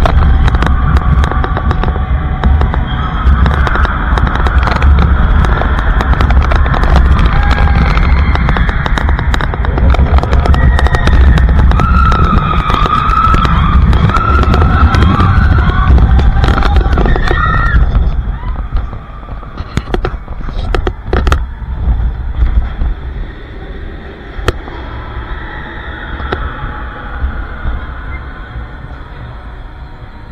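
Indoor roller coaster running in the dark: a loud, heavy rumble of the train on its track with music over it. About eighteen seconds in the rumble drops away sharply, leaving quieter music and scattered clicks.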